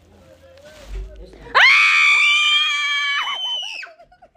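A young girl screams in fright at being startled: one long, high-pitched scream that starts suddenly about one and a half seconds in and lasts about two seconds.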